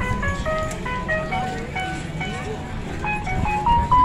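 Simple electronic jingle melody of short, clear notes stepping up and down, ending on a longer held note, over crowd chatter and a low rumble.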